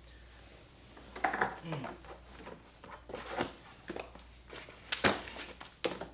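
Natural-fibre rope being drawn and pulled tight through a column-tie cinch by hand: irregular rubbing and rustling of the rope, with two sharp rustles near the end.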